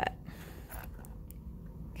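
Faint, soft handling sounds of fingers pressing a small clay rose onto the handle of a clay spoon, a few light touches over a low steady room hum.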